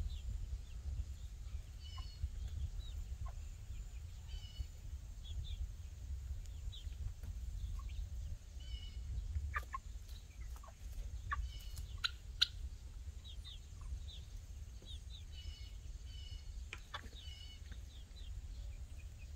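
Young Cornish cross chickens cheeping, short high calls coming a few at a time through the whole stretch, with a few sharp taps, over a steady low rumble.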